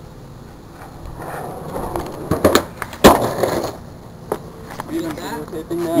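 Skateboard on concrete: wheels rolling, a few sharp clacks of the board, and one loud slap of the board hitting the ground about three seconds in, followed by more rolling.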